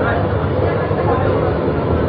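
Moderus Gamma LF 03 AC low-floor tram running along the track: a steady low rumble from the tram in motion, with people's voices talking over it.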